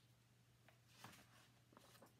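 Near silence with a faint steady hum, broken by a few soft rustles of a picture book's page being turned, the clearest about halfway through.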